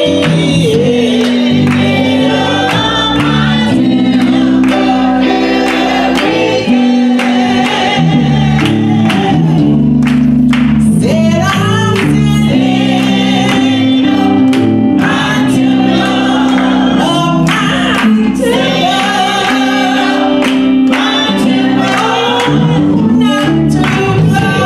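Gospel praise team of women singing together into microphones, backed by a live band with drums and electric guitar. The singing and the beat are steady.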